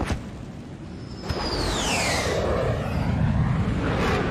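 Anime sound effects of a flaming winged creature swooping down: a falling whistle about a second in, then a rushing rumble that builds and grows louder.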